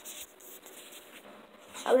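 Faint rustling and scratching of a handheld camera device being moved and turned around, with a boy starting to speak near the end.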